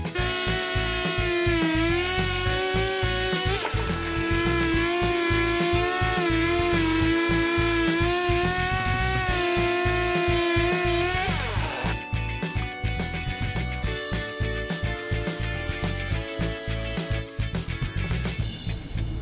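Electric sander with a coarse-grit abrasive running against a softwood slab, a steady whine that dips and wavers in pitch as it is pressed and moved, fading out about two-thirds through. Background music with a steady beat plays throughout.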